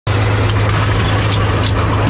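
A T-90A tank heard from inside its turret: a steady, loud, low drone of the running tank, with a few light mechanical clanks over it.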